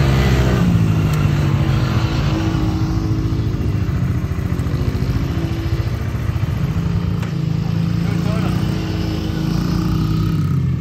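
Small engines of a child's mini dirt bike and a nearby ATV running together, their pitch rising and falling as the throttle is eased on and off.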